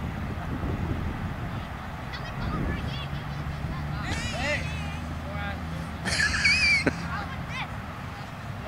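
Children shrieking and yelling in high, wavering voices, two outbursts about four and six seconds in, the second the loudest, over a steady low hum.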